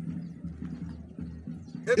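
A pause in a man's speech through a microphone, leaving a low steady hum with faint scattered clicks in the background; his voice comes back right at the end.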